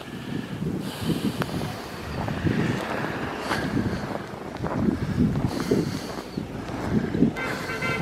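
Wind buffeting the microphone, an uneven low rumbling flutter. Near the end a rapid, evenly repeating beeping tone starts up.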